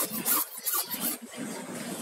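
Cutter blade scraping dark, carbon-like residue off the glass of an LCD panel in a few short, uneven strokes, strongest in the first second. The residue is being cleared so the replacement polarizer gives a clean picture.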